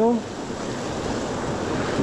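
Fast river rapids giving a steady, even rush of whitewater.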